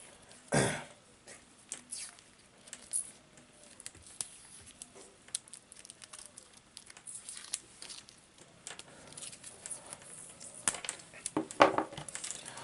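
Vinyl electrical tape being peeled off the roll and wrapped around a wire splice: short crackling peels and rustles with scattered handling clicks, the loudest peel about half a second in and a busier stretch near the end.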